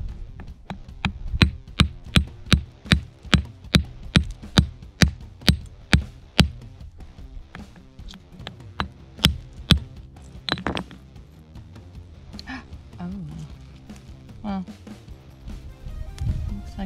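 Steel rock pick hammer striking a rock over and over to crack it open: sharp knocks at about three a second for six seconds, then a pause and a few slower, spaced blows.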